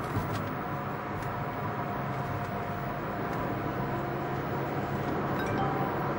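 Steady road and engine noise inside a moving car's cabin, with faint held tones above it.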